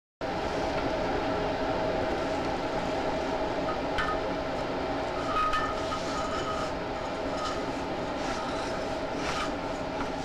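Drain inspection camera being fed down a roof drain stack: a steady rumbling rattle with scattered light clinks as the camera head and push cable knock against the inside of the pipe.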